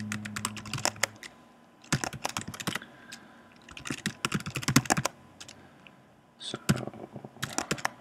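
Typing on a computer keyboard in four quick bursts of keystrokes, separated by pauses of about a second.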